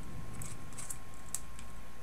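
Thin steel picture-hanging wire being twisted by hand into tight coils around itself, giving a few faint, light metallic ticks.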